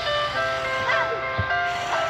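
Background music: a simple electronic tune of held, chime-like notes that step from one pitch to the next every few tenths of a second.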